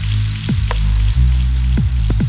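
Electronic background music with a heavy bass line and deep kick drums that drop quickly in pitch, several times.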